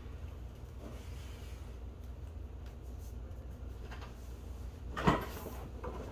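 A person settling into a leather recliner with an acoustic guitar: faint shuffling and knocks, with one sharp thump about five seconds in, over a steady low hum.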